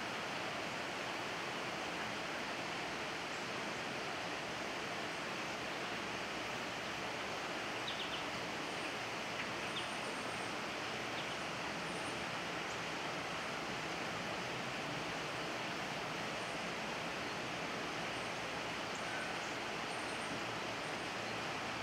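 Steady, even hiss of outdoor background noise, with faint short high chirps scattered through it.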